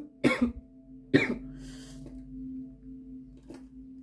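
Coughing: two short coughs in the first second and a half. A steady low hum with a few faint overtones runs underneath.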